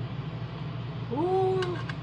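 A man's drawn-out hummed 'mmm' of appreciation about a second in, rising then holding then falling, over a steady low background hum; a few faint clicks near the end.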